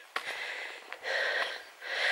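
A person breathing close to the microphone while walking: two audible breaths, one about a second in and another near the end.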